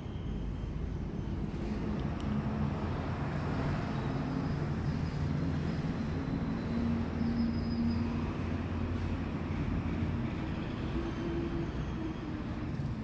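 Low rumble of passing vehicle traffic, rising in the middle and easing near the end.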